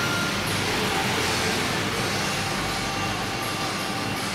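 Steady, even noise with a faint hum and a few faint steady tones, with no distinct events.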